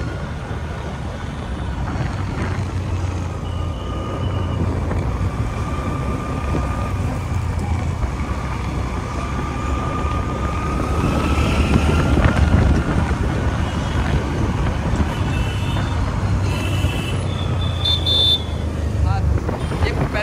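City traffic heard from a moving two-wheeler: a steady low rumble of the ride and road. A slowly rising tone passes through the middle, and a few short vehicle horn toots come near the end.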